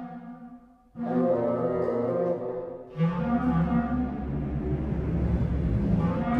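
Sampled orchestral phrases from the Sonokinetic Espressivo library played from a MIDI keyboard, with low bowed strings to the fore. A phrase dies away, a new one starts about a second in, and another starts about three seconds in with a deeper bass under it.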